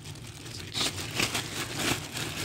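Plastic bread bag crinkling and rustling as it is handled and pulled open, in a series of irregular crackles.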